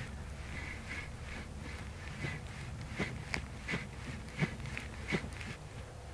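A pair of rattan sticks swung in alternating strikes, giving faint, irregular swishes and light clicks over a low steady background hum.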